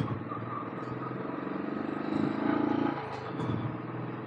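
Royal Enfield Classic 350's single-cylinder engine running under load as the motorcycle climbs a steep hill road. It grows louder for about a second around the middle, then settles back.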